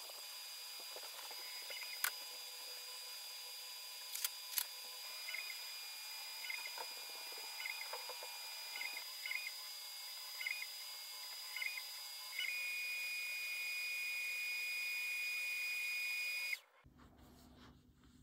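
Voxelab Proxima resin 3D printer starting its print: the build-plate stepper motor whines in short moves about once a second, then runs steadily for about four seconds before the sound cuts off suddenly. A faint steady high tone lies under it, with a few sharp clicks in the first five seconds.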